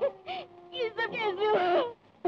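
A woman wailing and sobbing in grief, her voice rising and falling in pitch and loudest in the second half, cutting off just before the end, over a faint held note of background music.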